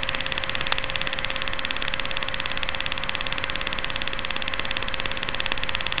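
Steady electronic buzz and hiss with one faint held tone underneath, even and unchanging throughout, like interference on the audio of a quad's analog onboard camera feed.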